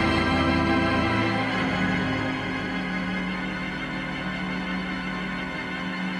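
Wonder Morton theatre pipe organ playing a slow ballad on its string ranks, sustained chords with a change of chord about a second and a half in.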